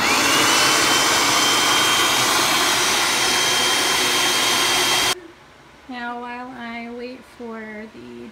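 Electric food processor running, pureeing jalapeño peppers with apple cider vinegar: the motor whine rises quickly as it spins up, then holds steady over the chopping noise, and it stops abruptly about five seconds in.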